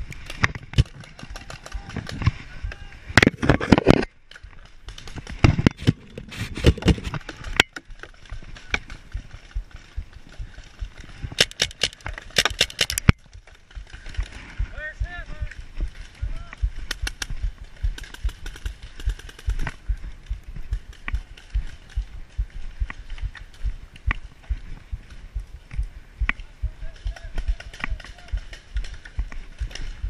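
Paintball game heard from the player's own camera: clusters of sharp pops and knocks from the Tippmann A-5 marker and its handling in the first half, then steady footsteps about twice a second as the player moves.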